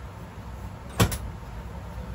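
A sharp slap of a hand on a person's back about a second in, a quick double strike of percussive massage, over a steady low background rumble.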